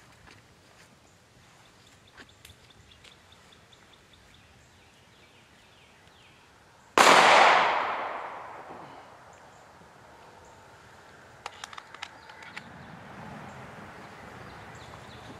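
A single shot from a SIG Sauer P938 9mm pistol about seven seconds in: a sharp crack whose echo fades over about two seconds. A few faint clicks follow near the end.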